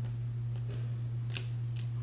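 Scissors snipping paper, two short crisp snips about half a second apart, over a steady low hum.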